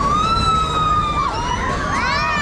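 Riders on a half-pipe swinging fairground ride screaming: long high screams that rise sharply at their start, one held for over a second from the start and another beginning near the end, over a steady low rumble from the ride and crowd.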